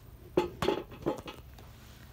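Wooden Jenga blocks knocking together: four sharp clacks within about a second, the first two loudest, about half a second in.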